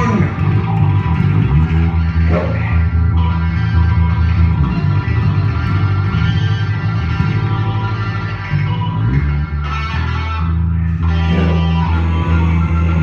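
Loud, steady rock music in an instrumental passage with no singing: electric guitar over bass and drums.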